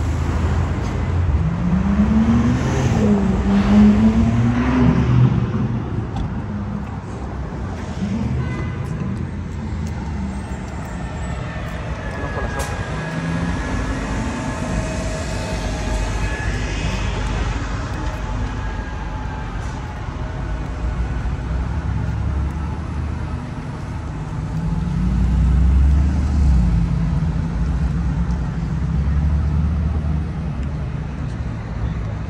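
City street traffic with cars passing. A couple of seconds in, one engine's pitch rises and falls as it revs, and another vehicle passes louder near the end.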